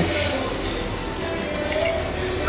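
Light clinks of a metal fork against a ceramic plate while eating, over a steady background hum.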